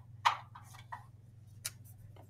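A few scattered light clicks and taps, the first and loudest about a quarter second in and a sharp one near the end, over a faint steady low hum.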